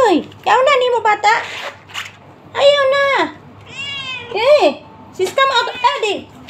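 A cat in labour meowing repeatedly and loudly: a series of short calls that rise and fall in pitch, with one longer, held call about halfway through.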